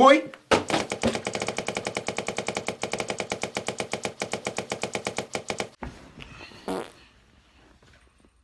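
Edited audio stutter imitating video-game lag: a short pitched sound fragment repeated rapidly, about ten times a second, for about five seconds, then stopping abruptly. A brief short noise follows about a second later.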